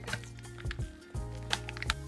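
Background music with a low, sustained bass and a few sharp ticks.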